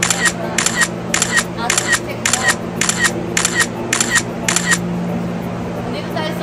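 Camera shutter clicks repeated in an even rhythm, a little under two a second, stopping about five seconds in, over a steady low hum.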